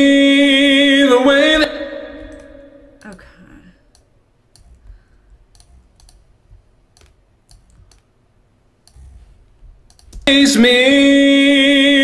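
A male vocal holding a sung note with an even vibrato, played back from a track whose vibrato has just been added and evened out by pitch editing in Melodyne; it fades out after a second or two. A few faint clicks follow, and the vibrato note plays again about ten seconds in.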